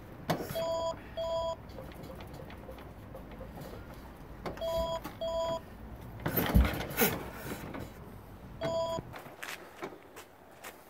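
Electronic two-tone beeps, a pair about a second in, another pair about five seconds in and one more near the end. Between them come a few dull thumps and clanks, the heaviest about six and a half seconds in, as the 1961 Panther 650's big single-cylinder engine is kicked over without firing.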